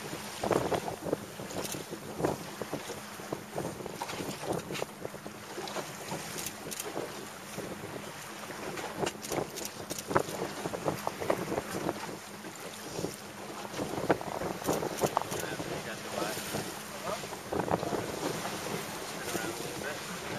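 Wind buffeting the microphone on a small boat at sea, with water splashing and slapping irregularly and a low steady hum underneath.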